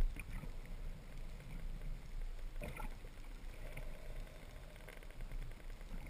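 Underwater ambience on a submerged camera: a low, even water rumble, with a brief cluster of faint clicks a little before the middle.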